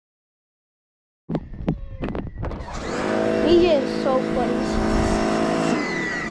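After about a second of silence, a few sharp knocks, then an electric pressure washer running: a steady motor-and-pump hum with the hiss of the spray.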